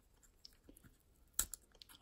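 Faint handling of a stack of plastic card toploaders held together with blue painter's tape: a few soft clicks and crackles as the tape is picked at and peeled, with one sharper click about one and a half seconds in.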